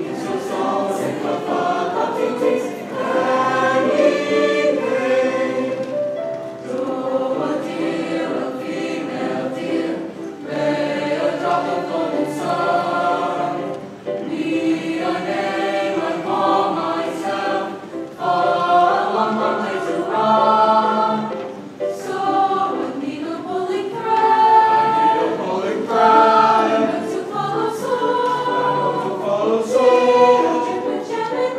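A large chorus of young students singing together, accompanied by a student orchestra, in one continuous passage of sustained sung notes.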